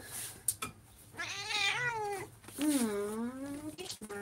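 A pet's two long, wavering calls about a second each, the second one lower in pitch.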